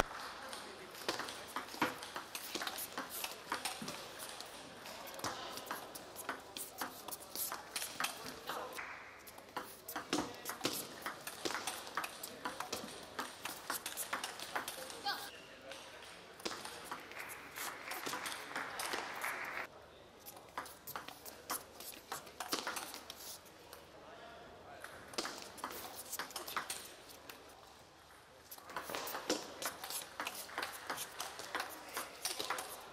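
Table tennis rallies: the celluloid ball clicking off the rackets and bouncing on the table in quick back-and-forth runs of strokes, with short pauses between points.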